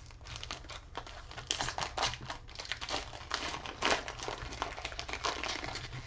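Foil trading-card pack wrapper crinkling and tearing as it is pulled open by hand, in irregular crackles that are a little louder about one and a half, two, four and five seconds in.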